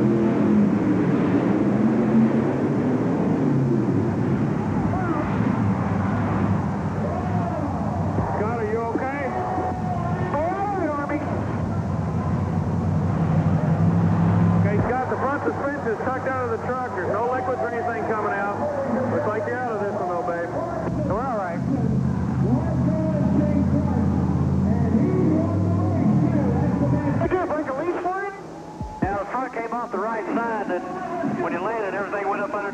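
Monster truck engines running at the start line, their low drone stepping up and down in pitch as they are revved, with a voice over them. Near the end the engine sound drops briefly and then picks up again as the race starts.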